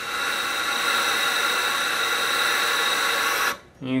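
Compressed air hissing steadily from a leaking Tippmann A5 paintball marker. The leak seems to come down the barrel or from around the valve assembly where the tombstone meets the valve. The hiss cuts off suddenly near the end.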